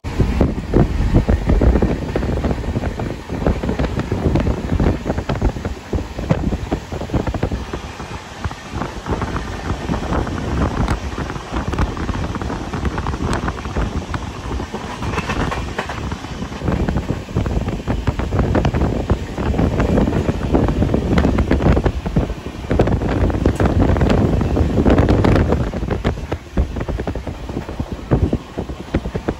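Passenger train running at speed, heard from an open coach doorway: wheels rumbling and clattering on the rails, with wind buffeting the microphone.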